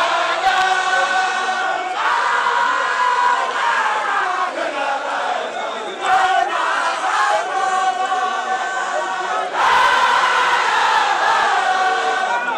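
A large crowd of Baye Fall men chanting together, many voices holding long notes in a loud, dense chorus, with shifts between phrases every few seconds.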